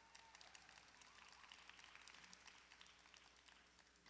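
Near silence: faint room tone of the ice arena, with a few faint ticks.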